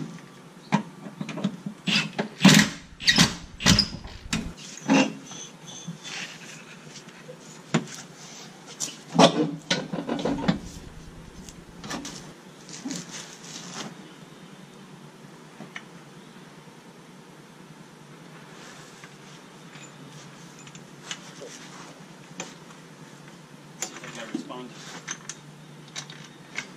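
Cordless impact driver working on a car's rear subframe bolts, running in a couple of short loud bursts in the first half. Scattered metal clicks and knocks from the tools and parts follow, and the second half is quieter.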